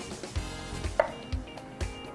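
A knife slicing a strawberry on a wooden cutting board, with a sharp tap of the blade on the board about a second in, over background music with a steady beat.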